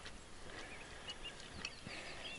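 Faint lakeside background with a few short, faint high chirps of a distant bird in the second half.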